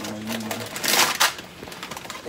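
Packets and cans being shifted by hand on a pantry shelf: rustling and clattering, loudest about a second in.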